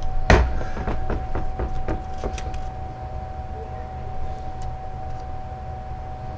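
A sharp knock of a hand tool set down on a workbench, then several lighter clicks and knocks as the plastic pistol grip is worked loose from an AR-15 lower receiver.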